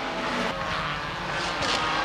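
1985 Formula One cars running on a rain-soaked circuit, several engine notes overlapping, over a steady hiss.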